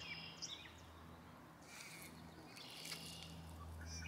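Faint steady buzzing of a male carpenter bee held between the fingers as it struggles to get free, breaking off for about a second midway. Faint bird chirps sound in the background.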